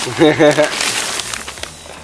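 A plastic bag of soil crinkling and rustling as a hand scoops soil out of it. A brief pulsing, laugh-like voice comes at the start.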